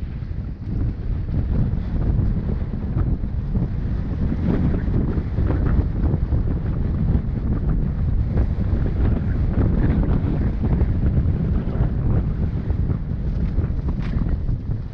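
Heavy wind buffeting the microphone of a camera riding along on a mountain bike, with frequent small rattles and knocks from the bike rolling over a rough dirt trail. The rumble builds over the first couple of seconds and then holds steady.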